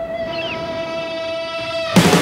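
Background rock music drops to a single steady held note with a stack of overtones, with a brief slide about half a second in. The full band cuts back in abruptly at the end.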